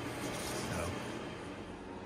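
Quiet, steady room tone in a workshop, an even hiss with no distinct events, and a faint trace of a voice in the first second.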